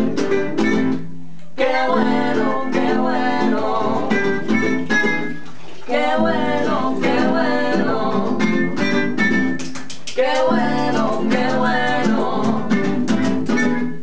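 Acoustic band music: a nylon-string classical guitar strumming the rhythm, with a trumpet playing the melody in three phrases over it.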